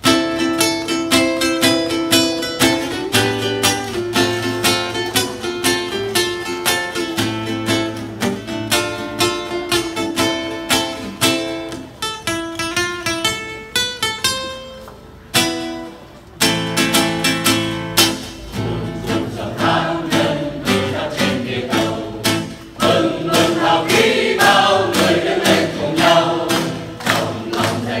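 Mixed choir of men and women singing a Vietnamese song to a strummed acoustic guitar. About fifteen seconds in there is a brief break, after which the sound is fuller.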